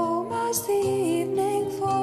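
Acoustic folk music in an instrumental passage: plucked strings under a sustained melody line that steps from note to note.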